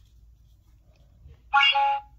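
A toy cash register's electronic beep as an item is scanned: one loud, short tone about one and a half seconds in, after near quiet.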